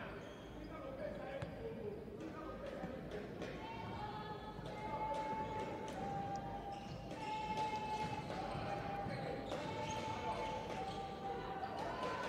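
Basketball dribbled on a hardwood court, repeated bounces, over the sound of an arena crowd. From about three and a half seconds in, a long pitched tone holds on, shifting between two close notes.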